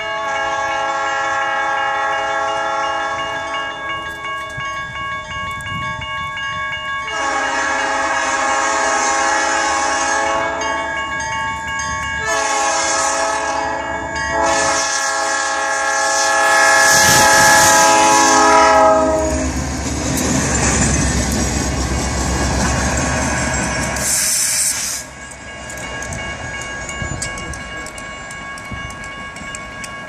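Diesel locomotive air horn sounding the grade-crossing signal: long, long, short, long. The train then passes the crossing close by, pushing a snowplow, with a loud rumble that cuts off sharply about 25 seconds in. A crossing bell rings steadily underneath.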